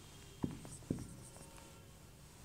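Marker pen writing on a whiteboard: faint strokes with two light taps about half a second apart.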